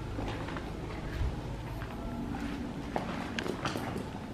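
Footsteps on gravelly dirt ground: a series of irregular steps with light crunches and clicks.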